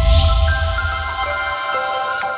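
Electronic outro jingle: layered bell-like chimes ringing and held over a deep low boom that fades away about a second and a half in, with new chime notes joining partway through.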